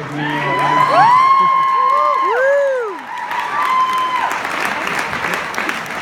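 A small audience applauding, with several people whooping and cheering over the clapping in the first few seconds. The whoops die away and the clapping carries on.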